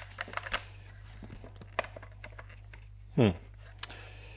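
Scattered light clicks and rustling of packaging being handled as a router is tugged out of a tight box.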